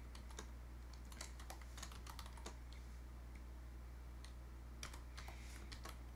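Typing on a computer keyboard: faint key clicks in two short runs with a pause of about two seconds between them, over a steady low hum.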